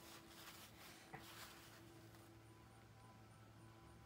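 Near silence: faint soft rustles of a paper towel dabbed on wet cardstock to soak up excess water, over a faint steady room hum.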